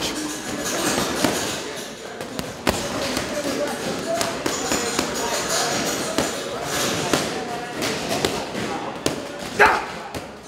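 Gloved punches landing on a leather heavy bag, a few scattered thuds with the loudest near the end, over continuous background chatter of voices.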